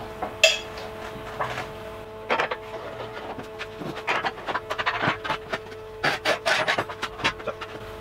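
Steel parts of a homemade sheet metal folder being handled: a sharp metal clank about half a second in, then an irregular run of quick clicks, knocks and rubbing as the clamp bolt and top clamp bar are worked by hand.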